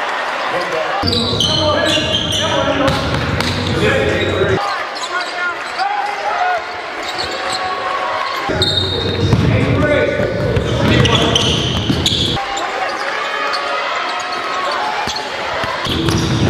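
Basketball game sounds in a gym: a ball bouncing on the court amid indistinct voices, with a low rumble that cuts in and out abruptly twice.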